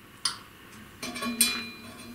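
A plastic wiring connector snapping home with a sharp click, followed by a few lighter clicks and clinks as the cable and plugs are handled.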